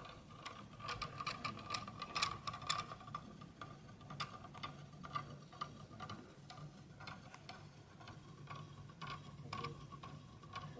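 Faint, irregular ticking and light clicks from a magnetic-gear rotor spinning freely on its wooden rod, the rotor's hole rubbing and knocking on the rod as it turns, over a faint steady hum.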